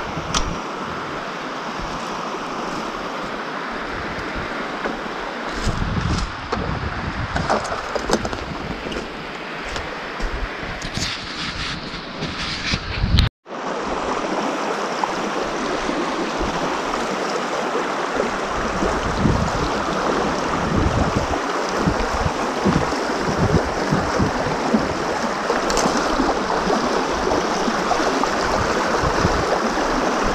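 Shallow mountain river running over stones, with wind buffeting the microphone in uneven low gusts. The sound cuts out for an instant about halfway through.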